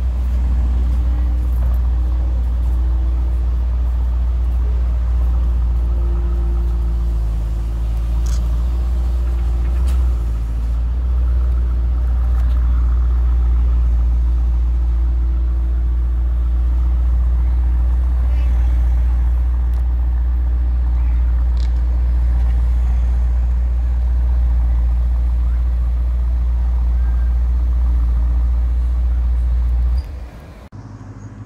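Mercedes-AMG GT 63 S four-door's twin-turbo V8 idling steadily, a deep low drone with no revving.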